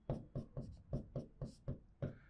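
Marker pen writing on a whiteboard: a quick run of short, scratchy strokes as letters are written.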